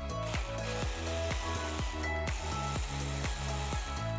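Electric mini chopper whirring as it blends yogurt with green chillies, under background music with a steady beat.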